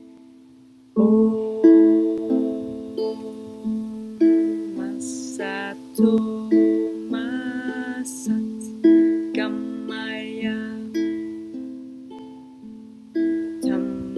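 Low-G-tuned ukulele finger-picked in a steady repeating four-note pattern, starting on an A minor chord about a second in, each note ringing on. A soft singing voice joins over the picking from about five seconds in.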